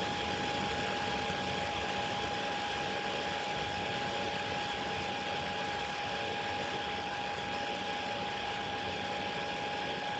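Steady background hiss and hum with one constant high whine, unchanging throughout; no other event.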